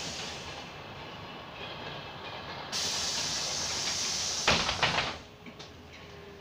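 Cabin noise of a moving city bus. A little before halfway a loud hiss starts suddenly. Near the end a quick run of sharp rattling knocks comes, and then the hiss cuts off.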